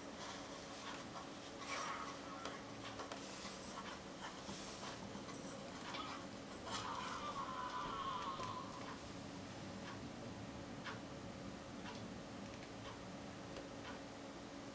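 Faint film soundtrack playing from smartphone speakers over a low steady hum, with a brief wavering pitched sound about seven seconds in.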